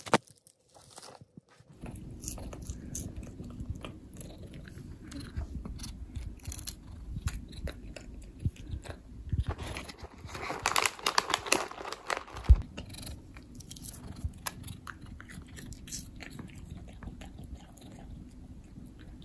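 A cat chewing and crunching a treat close to the microphone, with a low steady purr underneath; the crunching is loudest for a couple of seconds past the middle, with one sharp knock just after.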